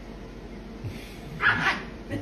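A small Pomeranian-type dog gives one short, high bark about a second and a half in.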